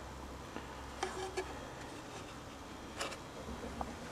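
A few faint, short clicks and taps from handling a plastic enclosure packed with electrolysis cell plates, over a low hum that stops a little under two seconds in.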